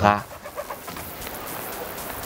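A man's voice trails off at the start, then faint bird calls, perhaps doves cooing, over a steady background hiss.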